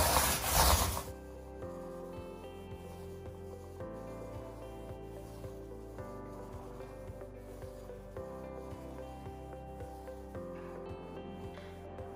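A paint roller rolling wet primer across a floor for about the first second, a loud rough rubbing. It then gives way to quieter background music with sustained notes and a light, steady beat.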